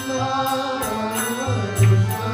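Kirtan music: a harmonium holds steady reed chords under chanting voices while a mridanga drum plays, with a deep ringing bass stroke about one and a half seconds in.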